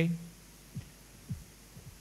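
A man says "okay" into a microphone at the start, then a pause with a faint steady low hum and three faint low thumps.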